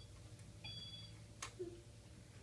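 Children's electronic toy laptop giving a short beep of two steady high tones about half a second in, then a single sharp click a little later.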